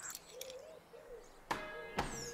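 A sharp click about one and a half seconds in, then a steady pitched creak, as the wooden garden-shed door is unlatched; a faint wavering chirp comes before it.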